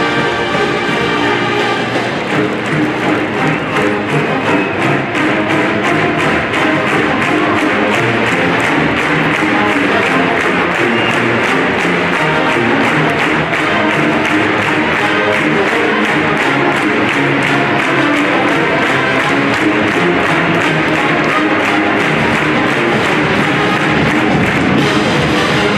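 Large brass band of sousaphones, trumpets and trombones playing loudly, with a drum kit keeping a steady beat.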